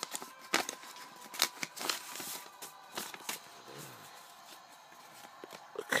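Paper rustling and crackling as a folded paper wrapper is opened and hand-drawn paper cards are handled: a run of soft crackles that thins out after about three seconds.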